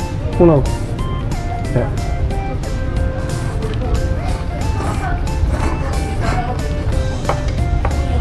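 Background music with a stepping melody line, with a short spoken syllable just after the start.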